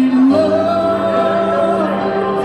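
A man singing live through a microphone with piano accompaniment; about a third of a second in he moves to a new note and holds it as one long note over sustained piano chords.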